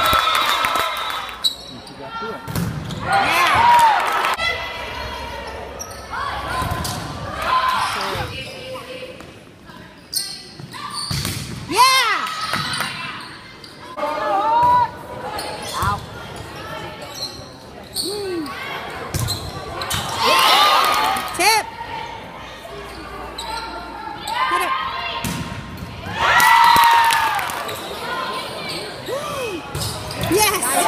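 Indoor volleyball play on a hardwood gym court: repeated sharp hits of the ball and short squeaks of shoes on the floor, with voices of players and spectators echoing in the hall.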